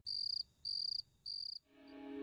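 Three evenly spaced, high-pitched cricket chirps, a night-time ambience effect. Soft music begins to fade in near the end.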